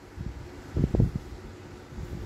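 Handling noise of an adjustable wrench in a gloved hand as its jaw is wound closed: a few soft, low rubbing thumps, the loudest about a second in.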